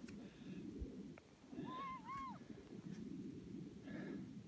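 A faint, distant high-pitched call, one wavering cry just under a second long about halfway through, over a low, steady rumble.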